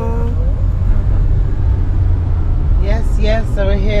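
Steady low rumble of a car driving along a winding road, engine and tyre noise heard from inside the cabin.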